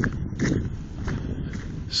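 Footsteps of someone walking on a sandy road, a few soft steps about half a second apart, over a steady low rumble on the microphone.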